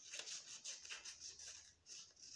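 Scissors cutting through lined notebook paper: a few faint snips with light paper rustling.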